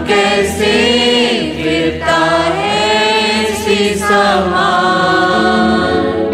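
A hymn sung by a group of voices, with long held, wavering notes.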